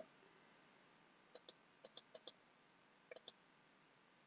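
Faint computer mouse button clicks in three quick groups, about nine in all, as the letter-spacing value is adjusted.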